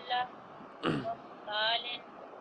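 A person clears their throat once, a short rough burst about a second in, between brief bits of spoken voice.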